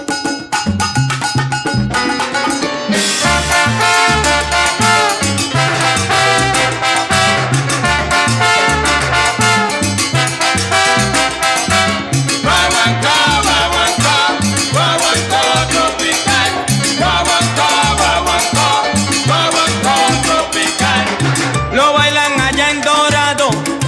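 Salsa band playing an instrumental guaguancó passage, with a steady percussion and bass groove. The band grows fuller and louder about three seconds in.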